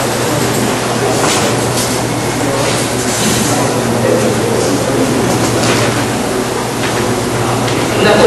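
Steady hiss with a low electrical hum in a lecture room, broken by a few brief faint scrapes.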